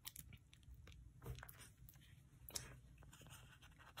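Near silence, with a few faint rustles and clicks of sticker sheets and the pages of a plastic-covered sticker book being handled, the clearest about a second in and again near three seconds in.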